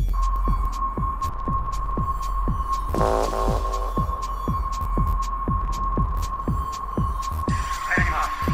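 Electronic techno track: a steady kick drum falling in pitch on each beat, a little over two beats a second, under a held high tone and a deep bass bed, with hi-hat ticks and a short chord stab about three seconds in.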